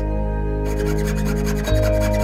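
Background music with sustained tones over the faint rasping strokes of a jeweller's saw blade cutting through 18k yellow gold sheet. The sawing drops out for a moment at the start.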